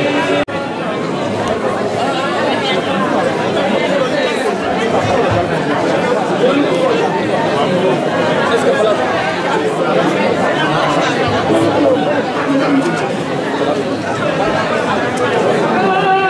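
Chatter of many people talking at once in a room, a steady hubbub of overlapping voices. It breaks off for an instant about half a second in.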